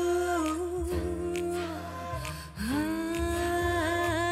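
Female voice humming long wordless notes over a bass line and soft beat, part of a Bengali film song's intro. A first note fades out in the first second; after a short dip a second note slides up into place and wavers near the end.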